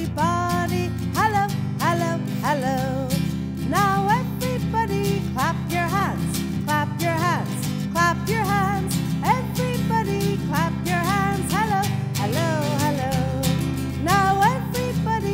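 Acoustic guitar strummed steadily in a bright, even rhythm, with a woman's voice singing a simple children's song over it.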